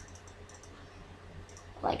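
A few faint clicks of a computer mouse over a low steady hum.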